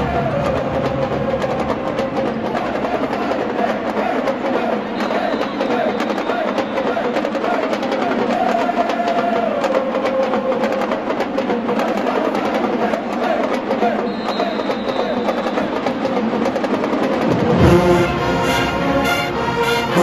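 HBCU marching band members chanting together in unison over a steady percussion beat, their horns silent. Near the end the full brass section comes in loudly with low horns and tubas.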